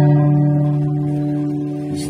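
Acoustic guitar chord strummed at the start and left ringing, slowly fading.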